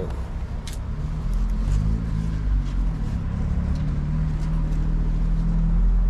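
A car engine running close by, coming in about a second in and growing a little louder, its pitch drifting slightly.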